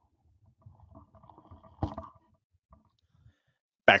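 Handling noise from a Tascam TM-70 dynamic microphone being turned on its boom and shock mount, picked up by the mic itself: low rumbling and rubbing with one sharp knock about two seconds in.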